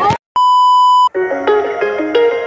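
A steady, high-pitched electronic beep lasting under a second, cutting off sharply: an edited-in bleep tone. Right after it, background music with a melody of plucked or keyboard notes begins.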